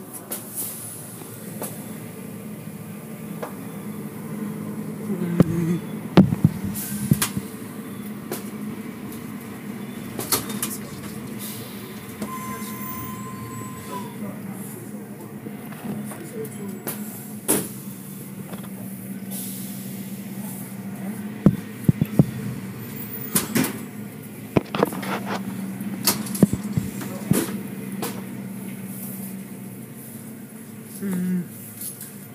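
Automatic car wash tunnel machinery heard from inside a car: a steady low hum with scattered knocks and slaps against the car, the loudest clusters about six seconds in and again after twenty seconds.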